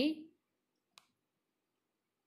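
A woman's spoken word trails off at the very start, then near silence broken by one faint, sharp click about a second in.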